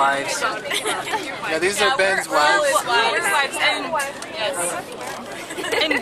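Several people talking at once: overlapping chatter of a group of passengers inside a bus.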